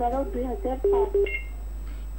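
A person's voice speaking over a telephone line, with a faint steady hum underneath.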